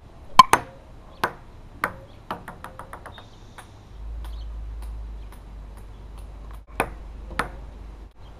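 Ping-pong ball clicking against paddles and the table: a few separate hits in the first two seconds, then a quick run of bounces coming closer together about three seconds in, and two more hits near the end.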